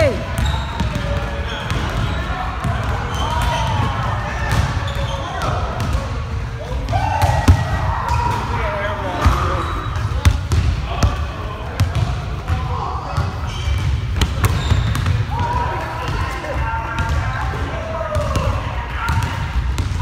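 Several people's voices shouting and talking indistinctly in a gymnasium, with a basketball bouncing on the hardwood floor and sharp knocks now and then.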